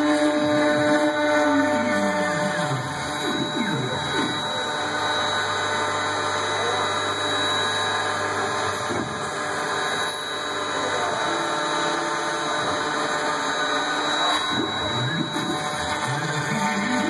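CNC foam router running as it carves foam: its motors whine in several rising and falling pitch glides as the axes speed up and slow down, over a steady high tone.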